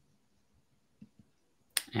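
A near-silent pause with two faint clicks about a second in, then a sharp click near the end as a man starts to speak.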